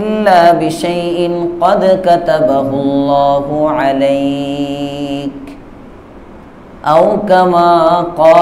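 A man chanting Arabic in a slow, melodic recitation, holding long notes with gliding ornaments. He pauses about five and a half seconds in, then resumes near the end.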